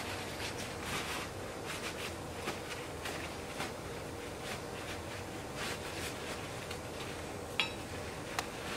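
Cloth rustling and rubbing as the metal halves of bypass pruners are wiped dry with a rag, with a sharp click near the end.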